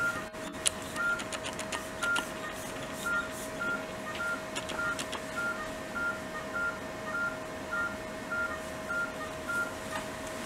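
Medical equipment in an operating room beeping steadily: short, high electronic beeps about two a second over a faint steady tone, with a few clicks in the first second.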